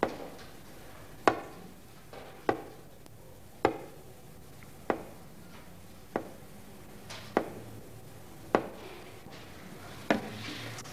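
A small hard box knocked on a glass-topped desk in slow, even, impatient taps, about one every 1.2 seconds.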